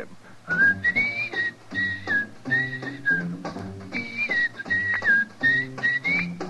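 A man whistling a bright melody in short phrases over light instrumental accompaniment from a small band.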